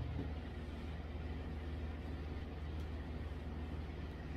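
Faint steady low hum over quiet room noise.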